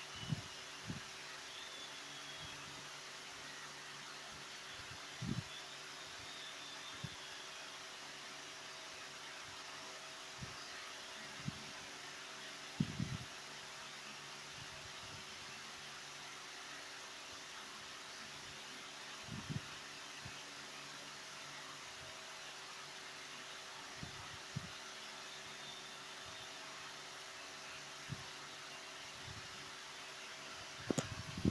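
Steady low background hiss with a faint hum, broken now and then by a few soft, short low thumps, the loudest about thirteen seconds in.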